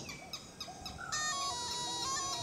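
Snake charmer's pungi playing a nasal, reedy melody of held notes over a drone. It is softer for about the first second and swells back just after.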